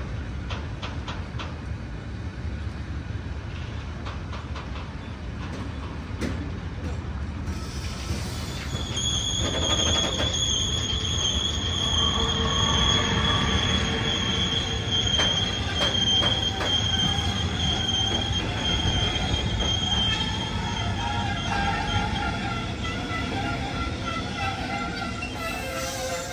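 Long freight train of covered hopper wagons rolling past, its wheels clicking over the rail joints under a steady rumble. About nine seconds in, a loud, steady high-pitched wheel squeal sets in and holds, with further squealing tones joining it.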